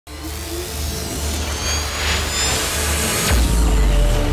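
Channel-intro sound design: a swelling whoosh with thin tones gliding upward over a low bass drone, growing louder and landing on a deep bass hit a little over three seconds in.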